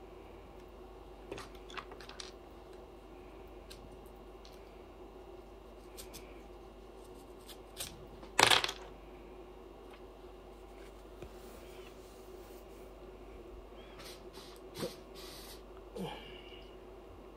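Hair and flexi rods being handled: soft rustles and small clicks as foam flexi rods are unrolled and pulled out of curled locs, with one much louder sharp rustle about halfway through, over a steady low hum.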